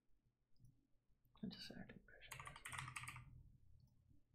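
Faint computer keyboard typing: a quick run of keystrokes a little past the middle, lasting about a second, entering a search term. A brief soft sound comes just before it.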